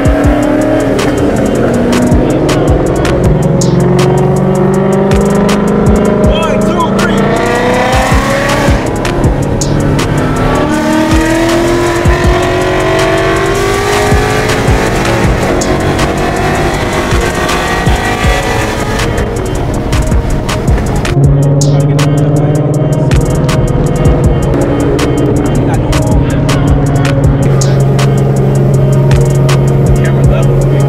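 Car engines accelerating, their pitch rising again and again, mixed with background music that has a steady beat. From about two-thirds of the way through, the music's sustained bass notes dominate.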